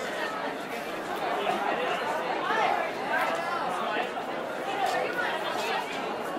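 Several voices talking over one another in a continuous babble of chatter, with no single voice clear.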